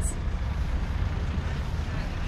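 Low, steady rumble of traffic on a town street.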